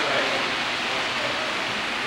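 Steady hiss of old videotape and camcorder audio, with faint voices in the background.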